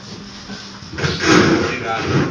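Men laughing together, breaking out suddenly about a second in, with a thump as it starts.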